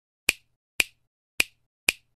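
Four sharp, dry snaps about half a second apart, an intro sound effect laid over the animated title letters.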